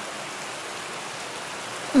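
Steady noise of running water, with no breaks or distinct drops.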